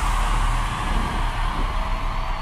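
Sound effects of a TV show's logo ident: a steady rushing noise with a deep low rumble underneath, no clear melody.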